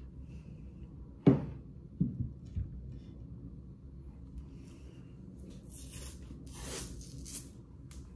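Workbench handling while taping hickory club grips: a sharp knock about two seconds in, a lighter one just after, then about two seconds of raspy tearing noise near the end as cloth hockey tape is pulled off the roll.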